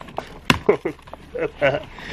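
A single sharp snap of stiff cardboard about half a second in, as the door of a cardboard beer advent calendar is forced open, among short wordless voice sounds.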